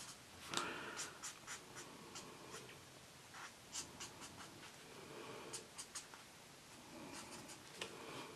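A marker's felt tip rubbing over colouring-book paper in short, faint strokes, with light scratchy ticks as each stroke starts and ends.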